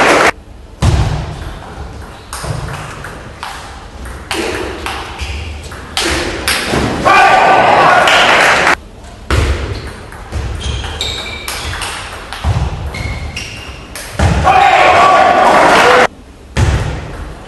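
Table tennis rallies in a large hall: a celluloid ball clicking off rubber bats and the table, with shoe squeaks and thuds. These are broken by two long, loud stretches of voices shouting and cheering between points, and the sound cuts off abruptly a few times.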